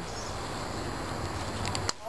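Steady outdoor background noise, with a few faint light clicks near the end.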